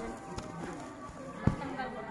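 One sharp, hard impact about one and a half seconds in, from silat sparring: a strike against a padded kick shield or a body hitting the ground in a takedown, with a lighter knock earlier.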